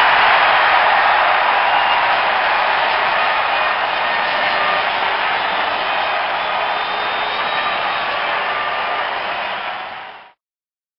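Audience applauding steadily, a dense clapping hiss with faint voices in it, slowly tailing off and fading out at the end.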